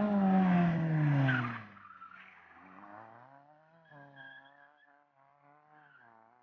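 Fiat Seicento rally car's four-cylinder engine revving hard close by, its pitch falling over the first second and a half as the car slides through a turn with tyre noise. The engine then runs much quieter, its revs rising and falling as the car pulls away, and fades near the end.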